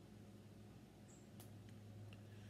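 Near silence: room tone with a faint steady low hum, a brief faint high squeak and a tiny click just after a second in.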